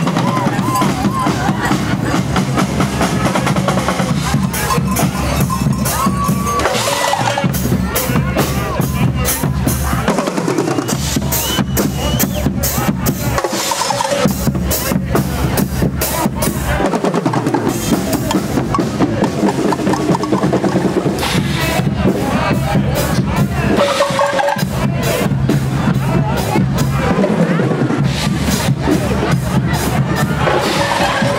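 Guggenmusik carnival band marching and playing: brass with sousaphones and saxophones over snare drums, bass drums and cymbals, loud and steady, with a steady beat of drum strokes. Crowd voices lie underneath.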